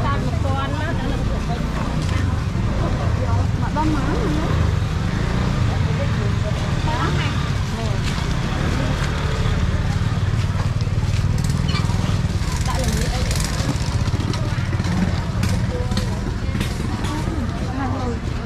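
Busy street-market ambience: people talking, with scattered clicks and rustles, over a steady low rumble.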